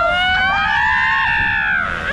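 A woman's long, high-pitched scream, held for about two seconds, rising slightly and then falling away near the end, as she is drenched on a water ride.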